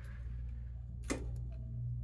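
Vintage central air conditioning system starting up: a low steady hum sets in, with a single sharp click about a second in.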